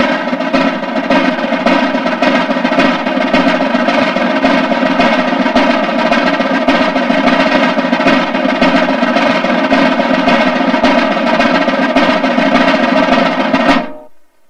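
A continuous snare drum roll with a held tone underneath, the drum roll that comes before a firing-squad execution. It stops suddenly near the end.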